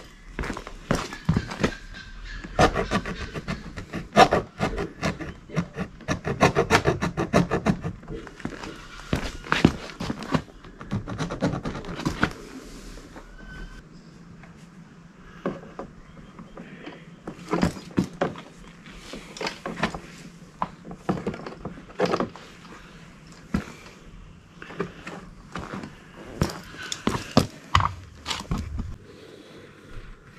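Irregular knocks, bumps and scrapes of a plastic car bumper cover being handled and moved about, coming in clusters with quieter gaps between them.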